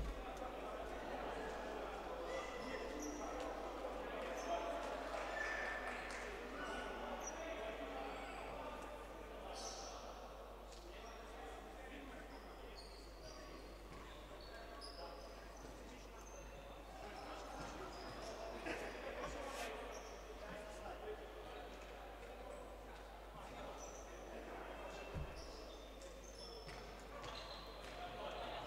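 Distant, echoing chatter of players' voices in a large indoor sports hall, with a single ball thud near the end.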